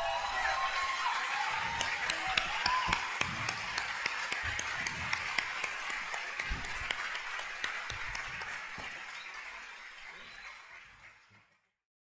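Audience applauding, with a few voices cheering in the first few seconds. The applause dies away steadily and cuts off about a second before the end.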